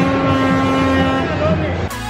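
A long Andean horn blown in a steady held note, which shifts pitch with a short slide about a second and a half in and breaks off abruptly near the end.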